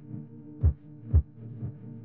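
Background music: a sustained low, humming pad with deep, heartbeat-like drum beats about twice a second.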